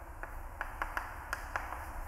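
Chalk on a blackboard while words are written: a string of light, irregular taps and ticks.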